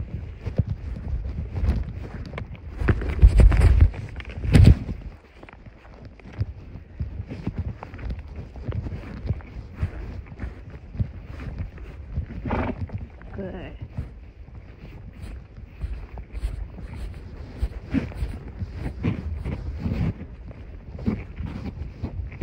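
Camera microphone rubbing and bumping against clothing during a horseback ride, with wind buffeting, irregular rustles and knocks throughout, and two heavy thumps about three and four and a half seconds in.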